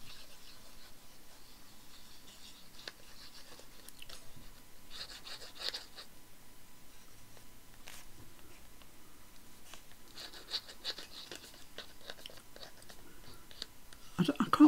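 Thin paper cut-outs crinkling and rustling faintly as they are handled and glued, in short crackly spells about five seconds in and again about ten seconds in, with a few small clicks.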